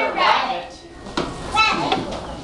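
Children's voices speaking indistinctly, with a short pause just under a second in.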